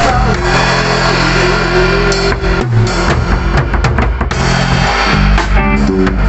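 Rock band playing live: drum kit, bass guitar and electric guitars. A long held note stands out over the first two seconds, and there is a run of busy drum hits through the middle.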